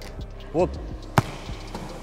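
A volleyball struck hard by hand: one sharp smack about a second in, in a float-ball serve-and-receive drill.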